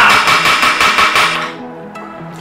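Wooden gavel banged on its sound block in a fast run of strikes lasting about a second and a half, over background music.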